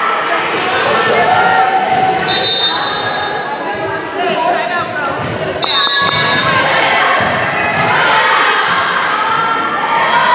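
Volleyball gym crowd: spectators and players talking and calling out in a large echoing hall, with a few knocks of a ball bounced on the hardwood floor. Two short, steady, high-pitched tones sound about three seconds apart.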